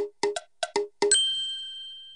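A short title-card sound effect: a quick run of short struck notes, then about a second in a bright bell-like ding that rings on and fades away.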